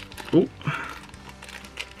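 Small sealed plastic pin bag crinkling and rustling as it is handled and opened by hand, with a few faint clicks.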